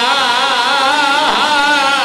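A man chanting a religious recitation in a melodic, sung style into microphones: one long held line with a wavering, vibrato pitch that dips and rises again partway through.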